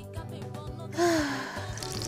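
A single voiced sigh about a second in, falling in pitch, over steady background music.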